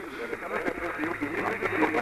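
A voice heard over a narrow, radio-like channel, as in radio communications, with the words not made out.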